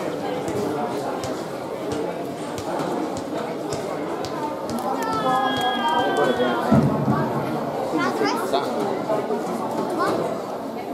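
Spectators chatting with many voices overlapping, and one voice calling out, drawn out and falling in pitch, about halfway through.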